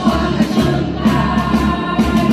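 Live pop-rock band music: a drum kit keeping a steady beat under keyboards, with a woman singing.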